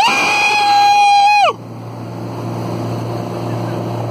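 A person's long, high-pitched cheering yell, held for about a second and a half and dropping away at the end. It gives way to the ski boat's engine running steadily under water and wind noise.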